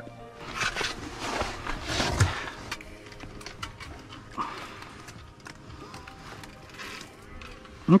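Handling noise from a fishing rod, line and gear: rustling with scattered knocks and clicks, busiest in the first couple of seconds, then fainter scattered clicks.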